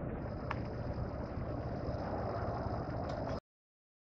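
Steady car engine and road noise heard from inside a slowly moving car, with a thin, steady high whine above it and a single light tick about half a second in. The sound cuts off suddenly about three and a half seconds in.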